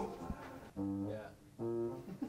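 Background music between speech: two short held low notes, guitar-like, about a second in and again near the end.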